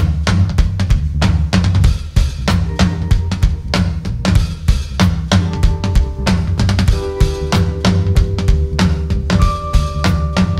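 Live band playing the instrumental opening of a soul/funk song: a drum kit with kick and snare keeping a steady beat over a heavy bass line. Held chord notes join about three seconds in and thicken around seven seconds.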